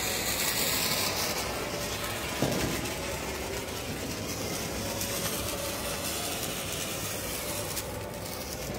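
Hand-held sparklers fizzing and crackling steadily, with one short sharp knock about two and a half seconds in.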